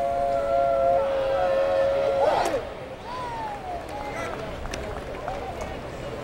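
A steady two-note tone held over ballpark crowd noise, cutting off about two seconds in. After that the crowd murmur carries on more quietly.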